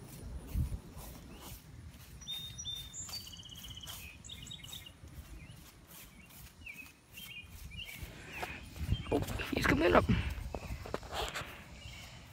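Footsteps on grass outdoors, with small birds chirping from about two to four seconds in. From about eight seconds in, louder rustling and snapping of leafy branches as someone pushes into a thicket.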